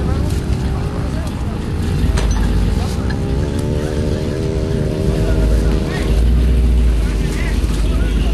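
Big-block V8 of a lifted Chevrolet Suburban running, its note rising a little between about three and five seconds in, over a deep rumble that gets louder about six seconds in.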